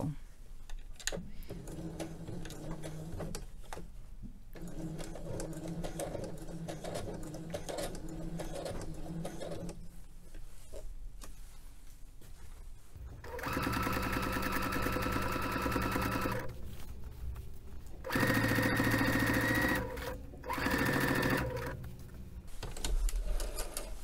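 Electric home sewing machine stitching a shirt collar back on. It runs quietly for about the first ten seconds, then in three louder runs in the second half, the last two short.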